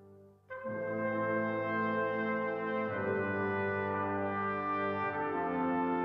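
Brass ensemble of tuba, trombone, trumpets and horn playing slow, held chords. After a brief lull a new phrase comes in about half a second in, with chord changes about three and five seconds in.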